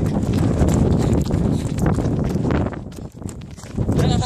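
Running footsteps with wind buffeting a phone's microphone, a loud low rumble that eases off about three seconds in.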